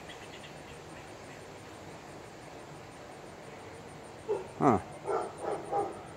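Hens clucking in a few short calls near the end, just after a man's short "huh". Before that there is only a faint steady outdoor background with a fast, high, even chirping like an insect.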